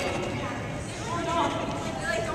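Faint chatter of players' voices in a large indoor hall, with no clear ball hits.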